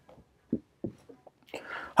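Quiet room with a few faint short clicks, then a breath in just before a woman starts speaking at the very end.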